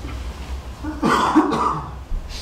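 A single cough, loud and close to the microphone, about a second in and lasting under a second.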